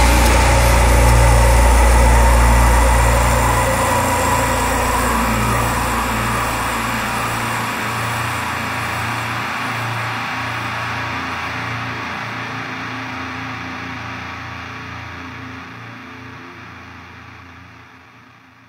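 The last distorted chord of a death metal song, held and ringing out after the drums stop. It fades slowly away; its deep bass dies out about four seconds in.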